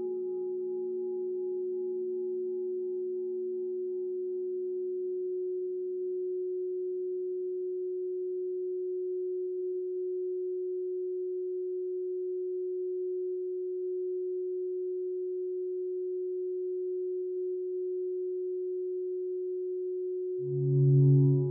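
A steady electronic pure tone held at one mid pitch, the 'frequency of gold' of a sound-frequency meditation track. Fainter tones above and below it die away over the first several seconds, leaving the single tone.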